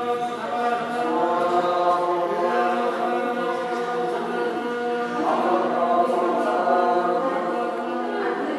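Tibetan Buddhist monks chanting together in a group, singing long held notes that step to a new pitch every second or two.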